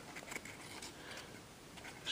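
Faint, scattered crinkles and small clicks of 20-pound printer paper being fan-folded into box pleats by hand.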